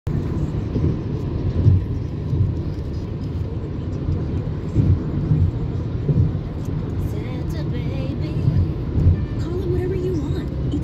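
Steady low road and engine rumble inside a car's cabin while driving on a freeway, with a few louder bumps from the road surface. A faint radio voice comes in near the end.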